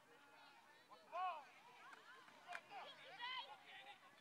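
Faint, distant shouted voices calling out across an open field, with louder calls about a second in and again past three seconds, and a brief sharp click a little past two and a half seconds.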